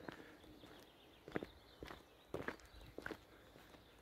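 Faint footsteps of someone walking at a slow pace, starting about a second in, about two steps a second.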